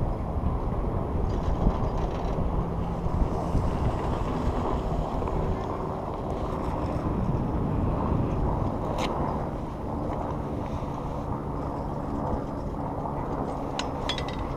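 Steady rush of wind on the microphone while riding an old Doppelmayr chairlift, with a faint low hum from the running lift and a sharp click about nine seconds in and another near the end.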